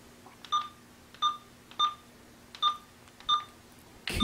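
Uniden SDS100 scanner's keypad beeping five times, one short beep per key press, as a five-digit zip code is keyed in.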